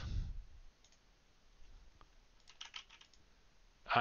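Faint computer keyboard typing: a few scattered key clicks, then a quick run of about eight keystrokes, as a nonsense string is mashed into a search box.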